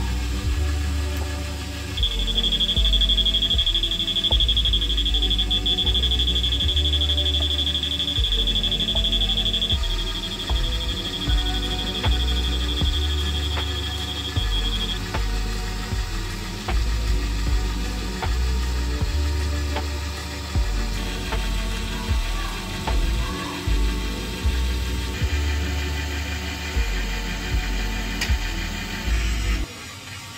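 Background music with a steady beat. Over it, the buzzer of a handheld metal detector circuit gives a single steady high-pitched tone from about two seconds in, which grows weaker after about ten seconds and stops about fifteen seconds in. The tone signals that the detector is sensing metal in the baggage.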